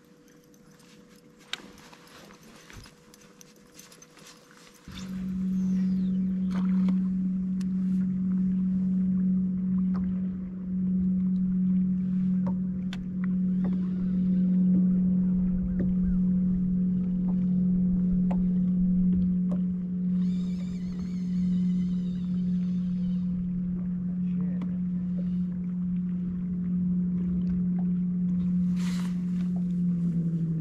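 Bass boat's electric trolling motor running steadily on high, a constant loud hum that starts abruptly about five seconds in. Right at the end its pitch slides down as the motor slows.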